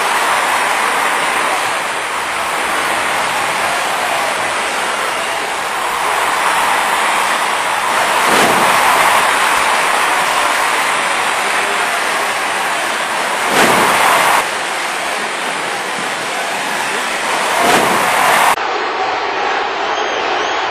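Dubbed-in arena crowd noise, a steady roar that swells a few times and cuts off suddenly near the end.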